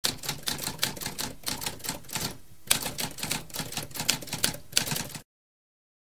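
Typewriter keys clacking in a rapid, uneven run of strikes. There is a short pause a little past two seconds in, and the typing stops abruptly about five seconds in.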